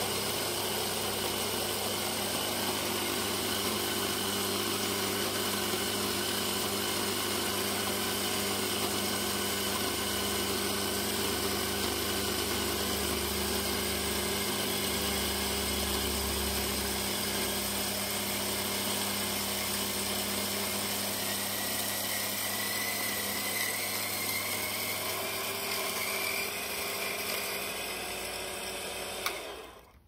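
Espresso machine pump running with a steady electric buzz, then cutting off abruptly near the end after a short click.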